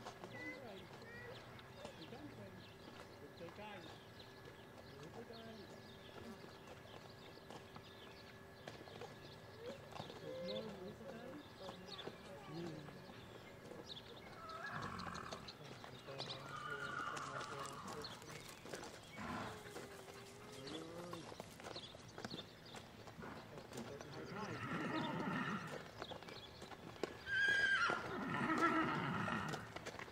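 A Percheron draft horse walking at a led pace on gravel, its hooves crunching. Several voice-like calls come in the second half, the loudest near the end.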